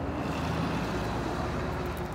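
Road traffic noise: a steady rush of passing vehicles with a low rumble underneath.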